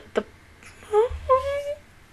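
A woman's high-pitched whining cry, muffled behind her hand: a short rising one about a second in, then a longer held one.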